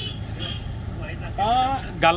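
Steady low rumble of a bus's engine and road noise heard from inside the passenger cabin, with a man's voice speaking briefly near the end.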